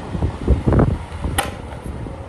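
Small electric desk fan running close up, its airflow hitting the microphone as low gusty noise that swells about half a second to a second in. A single sharp click comes about one and a half seconds in.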